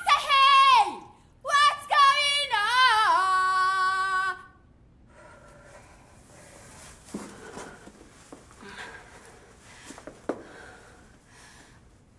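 A woman singing unaccompanied in wordless, wavering phrases with sweeping pitch slides, breaking off about four seconds in. After that there is only a faint hiss with soft rustles and a couple of light knocks.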